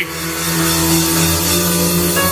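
Background music: a sustained keyboard chord held steadily, with no voice over it.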